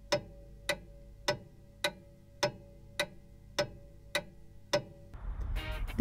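A steady ticking, just under two ticks a second, over a faint low held tone. Louder music comes in near the end.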